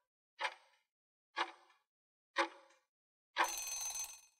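Quiz countdown timer sound effect: a tick about once a second, three times, then a short end-of-countdown sound with a ringing tone near the end as the count reaches zero.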